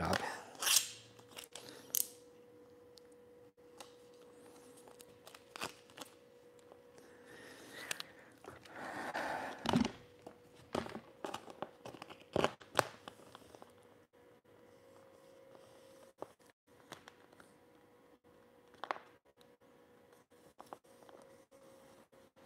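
Quiet, intermittent handling of a vinyl wrap sheet: rustling and crinkling as the sheet is lifted and folded around a fridge door panel, with scattered light taps and clicks, and a longer rustle about nine to ten seconds in. A faint steady hum runs underneath.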